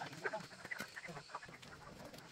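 Chickens clucking, a scatter of short calls.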